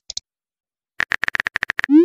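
Phone texting-app sound effects. About a second in comes a quick run of keyboard tap clicks, ending in a short rising swoosh as the message is sent.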